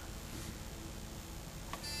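Quiet room tone, with a short, high beep-like tone near the end.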